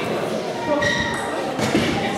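Indistinct voices echoing in a large sports hall, with two short, light knocks, one about a second in and one shortly before the end.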